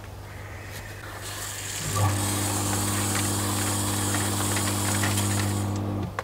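A steady low hum. About two seconds in, a louder, even machine-like drone with a high hiss comes in, holds steady, and stops abruptly at the end.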